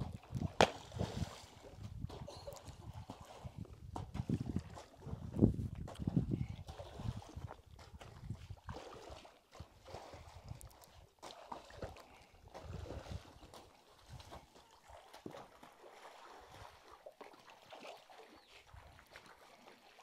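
Muddy pond water sloshing and splashing as a man wades through it, flinging handfuls of lime from a basin across the surface to disinfect the pond. The sloshing is busier in the first half and quieter after.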